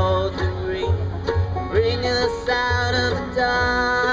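A bluegrass band playing live: banjo rolls, mandolin, a Collings D2H acoustic guitar and upright bass notes on the beat, with sustained melody notes held over the top.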